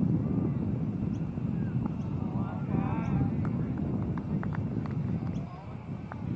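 Wind rumbling on an outdoor microphone, with a faint distant voice briefly about halfway through.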